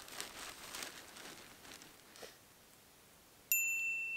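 A quiet stretch, then near the end a single bright, high-pitched 'ting' chime, a sparkle sound effect that rings briefly.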